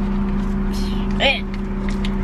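Steady low hum of a car running while parked, heard inside the cabin. A short spoken 'eh' comes a little past the middle.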